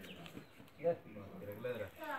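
Faint voices talking in the background, with one louder word or syllable just before the middle.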